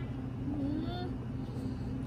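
Steady low background hum, with a faint voice rising in pitch about half a second in.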